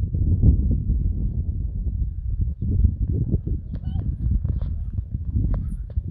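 Wind buffeting a phone microphone, a gusty low rumble, with irregular clicks and knocks of handling or footsteps from a few seconds in.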